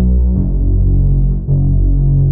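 Software synth bass preset "BL Trail of Blood" from the Frost soundset for u-he Zebra HZ, playing a syncopated bass line with distortion and feedback delay. It holds deep notes that change pitch about a third of a second in and again about a second and a half in.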